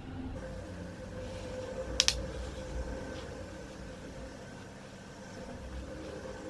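Faint brushing of a powder make-up brush sweeping contour powder over the cheekbones, over a steady low hum, with one sharp click about two seconds in.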